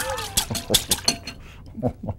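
Metal spoon clinking and scraping against a glass bowl while chunks of raw fish are gently stirred, a quick run of clinks over the first second and a half.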